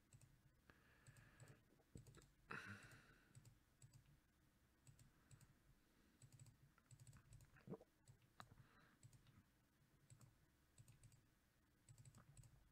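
Near silence with faint, scattered clicks from a computer mouse and keyboard.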